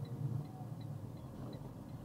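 Low, steady engine hum inside a box truck's cab as it slows for a turn, with a turn signal ticking faintly about three times a second.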